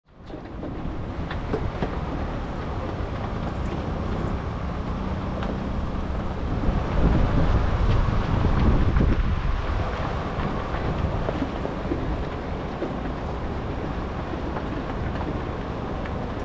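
Heavy-haul truck and trailer rolling slowly over gravel: a continuous low rumble with scattered rattles and clicks from the trailer, and wind buffeting the microphone. It swells louder for a couple of seconds around the middle.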